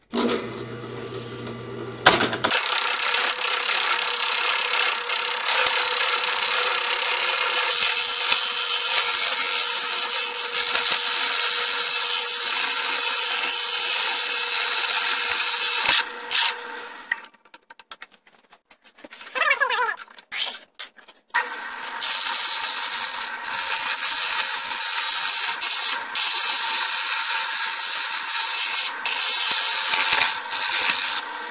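Drill press spinning a wooden blank while a chisel cuts into it as a makeshift lathe: a steady scraping hiss of the cutting over the motor's hum. The cutting breaks off for about four seconds past the middle, then resumes.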